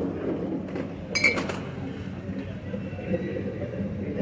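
Glass bottles clinking against each other briefly, about a second in, over a low background hubbub.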